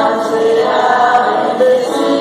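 A choir singing a hymn, holding long notes.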